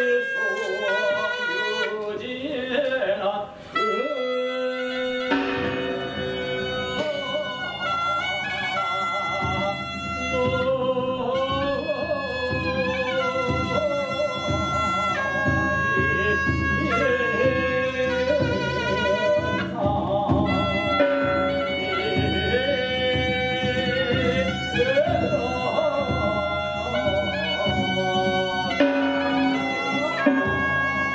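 Korean Buddhist ritual music (beompae) accompanying the nabichum butterfly dance: long, wavering melodic lines carry on throughout, and a fuller low accompaniment joins from about five seconds in.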